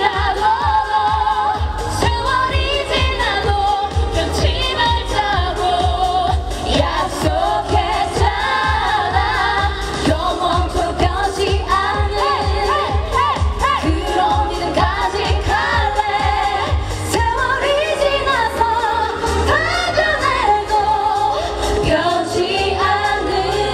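Live pop song over a concert PA: a woman singing into a handheld microphone over a backing track with a steady, pulsing bass beat.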